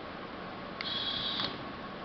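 A small geared DC motor driving a model vehicle whines briefly, switching on sharply just under a second in and cutting off about half a second later. It runs because the seat belt is locked and the drive is enabled.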